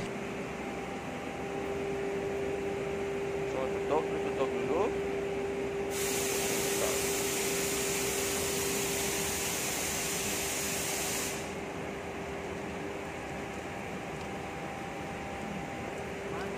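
A steady hum throughout, and for about five seconds in the middle a loud hiss that starts and stops abruptly: water spraying out of a loosened PVC pipe union on a water-filter line.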